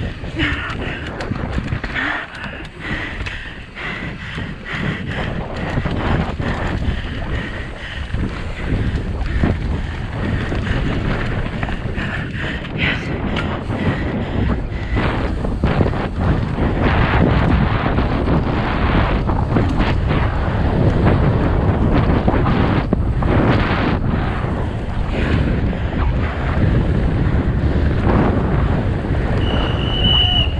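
On-board sound of a mountain bike descending a dirt trail at race speed. Wind buffets the microphone over the rumble of tyres on the dirt, with rattling and knocks as the bike hits bumps. It grows louder in the second half.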